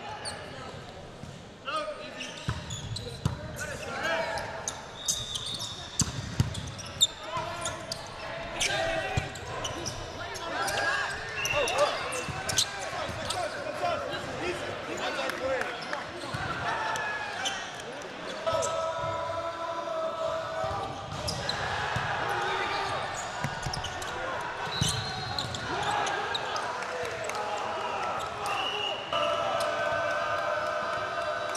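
Volleyball being struck and landing several times with sharp slaps, amid players' shouted calls echoing in a large gymnasium.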